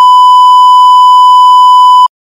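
Loud, steady 1 kHz bleep tone of the kind played under a TV colour-bar test card, held unbroken at one pitch. It is dubbed in as a censor-style gag sound over a screech.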